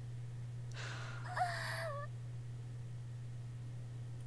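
A person's short breath out, then a brief, slightly wavering high vocal sound lasting under a second, over a steady low hum.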